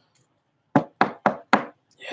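Four quick knocks on a hard surface in a row, about four a second.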